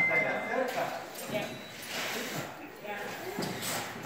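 Faint, distant voices of construction workers, with a few light knocks and clatters from work in the background.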